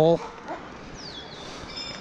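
Quiet outdoor background with a faint bird call: a short falling note about a second in, and a brief high note near the end.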